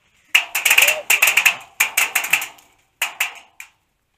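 Rapid airsoft fire close by: three quick bursts of sharp cracks, about eight to ten a second, with short gaps between the bursts.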